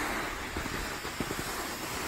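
Wind blowing over a hand-held camera's microphone outdoors: a steady rushing hiss with light low buffeting.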